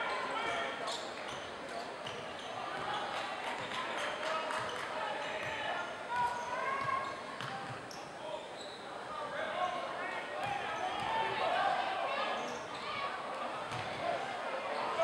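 A basketball being dribbled on a hardwood gym floor, irregular sharp bounces, under a steady chatter of voices from the crowd and players.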